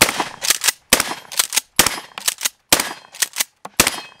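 Mossberg 590S Shockwave 12-gauge pump-action firing five shots of birdshot target load about a second apart. Each shot is followed by a quick two-part clack of the pump being racked back and forward.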